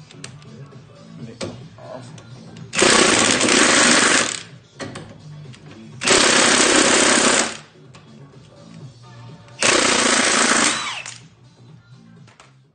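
Milwaukee Fuel cordless impact wrench hammering in three bursts of about a second and a half each, spinning out ten-point bolts that have already been cracked loose. Background music runs quietly underneath.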